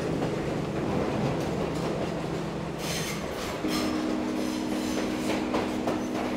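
Diesel locomotive running: a steady engine drone that shifts to a different pitch a little past halfway, with brief high-pitched squeals around the middle.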